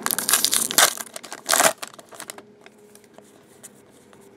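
A trading-card pack's foil wrapper being torn open and crinkled by hand, loudest in the first two seconds. It then dies down to faint rustles and clicks as the cards are handled.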